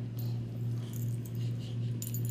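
A dog and a kitten play-wrestling on a fabric couch: soft rustling with a few faint light clicks, over a steady low hum.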